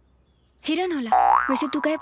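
A cartoon-style 'boing' sound effect, a quick rise and fall in pitch about a second in, trailing off into a steady ringing tone.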